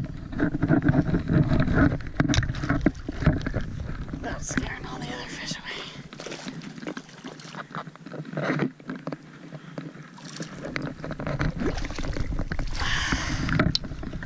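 Handling and wind noise on a chest-mounted action camera, with scuffs, clicks and knocks of fishing gear and footsteps on wet rock, and water sloshing, while a hooked brook trout is played toward the landing net. A low rumble runs through the first half and drops away about six seconds in.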